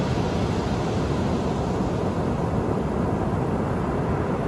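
Ocean surf breaking on a sandy beach: a steady, unbroken rush of waves, heaviest in the low range.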